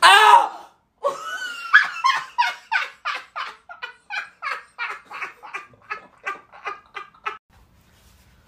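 A loud cry, then a woman laughing hard in short regular bursts, about three a second, that grow weaker and stop abruptly near the end.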